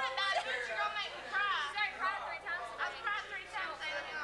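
Several teenage girls chattering, voices overlapping and too jumbled to make out words.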